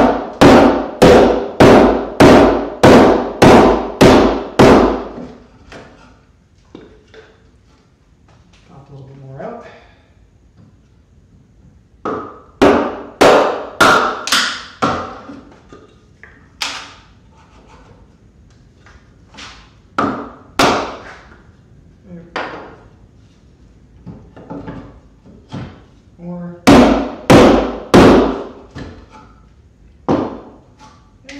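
A wooden mallet strikes a chisel chopping out a bridle joint slot in a four-by-four timber rafter. It opens with a fast run of about ten blows, roughly two a second. Scattered groups of blows follow, then another fast run near the end.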